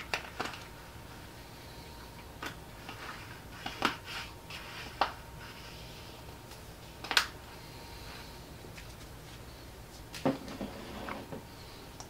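A steady low hum with a faint steady tone, broken by scattered light clicks and taps, about eight of them at uneven intervals, the sharpest about 4 and 7 seconds in.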